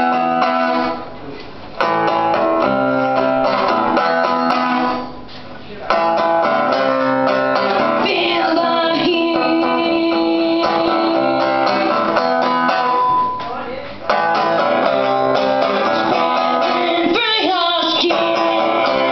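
Amplified acoustic guitar strumming chords in a stop-start punk rhythm, with short breaks about a second in, around five seconds and around fourteen seconds. A woman's voice sings over it at times.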